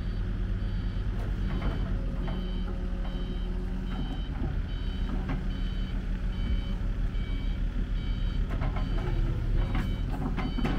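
Back-up alarm beeping in a steady rhythm, a bit under two beeps a second, over the steady rumble of the Caterpillar 308CR excavator's diesel engine, with a few brief knocks.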